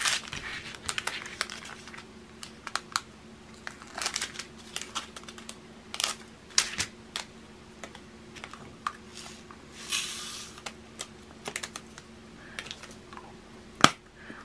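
Small plastic bags of diamond-painting drills and a plastic drill container being handled: scattered light clicks and crinkles, with a brief rustle about ten seconds in.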